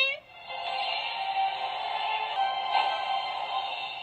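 Battery-powered Baralala Fairies heart-shaped charm case toy playing a song through its built-in speaker after its button is pressed. The melody of held notes starts about a quarter second in and fades near the end.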